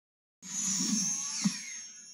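Cartoon magic sound effect heard through a TV speaker: a shimmering whoosh that starts suddenly, slides down in pitch and fades, with a short knock about one and a half seconds in.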